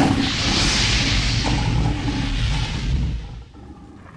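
Logo-reveal sound effect: a whoosh over a low rumble that dies away about three seconds in.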